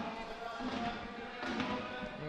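Faint stadium ambience in a sparsely filled football ground: distant voices and faint music, with no single sound standing out.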